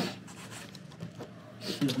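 Small white cardboard box and packaging being handled: a short sharp noise as it opens, then faint scratching and rubbing. A man's voice comes in near the end.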